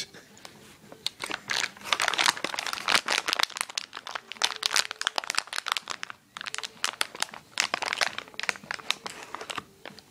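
Plastic cat-treat bag crinkling and rustling in quick, irregular bursts as it is handled, with a short pause about six seconds in.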